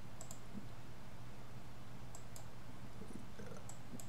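A few faint clicks of a computer mouse, coming in pairs, over a steady low electrical hum.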